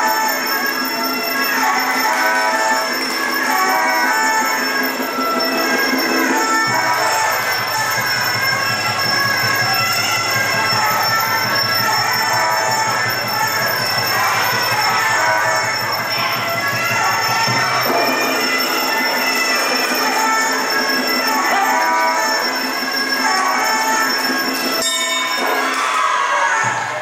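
Music with sustained, held chords over a low bass; the bass shifts about a quarter of the way in and again about two-thirds of the way through, and the music breaks off just before the end.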